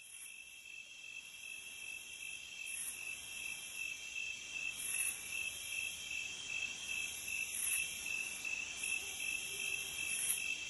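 Night chorus of crickets and other insects: a steady high trill, with a higher shimmering layer that swells now and then.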